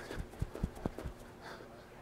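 Quick footfalls of high knees on the spot, a fast run of soft thumps in the first second that then die away.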